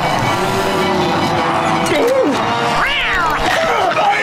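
Cartoon pet snails meowing like cats over background music. One long drawn-out call is followed by a swooping one, then a higher rising-and-falling call about three seconds in.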